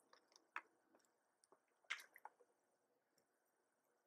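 Near silence with a few faint wet clicks and squishes: sips and swallows from a plastic water bottle.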